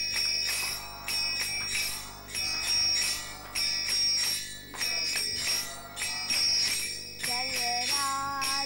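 Small brass hand cymbals (kartals) struck in a steady rhythm for a kirtan, each stroke ringing on. A voice chanting comes in near the end.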